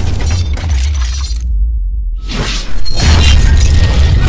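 Cinematic sound effects for an animated logo outro: a deep bass rumble under shattering, glassy crashes and sweeps. The high end drops out for about a second, then a loud hit comes in near the end.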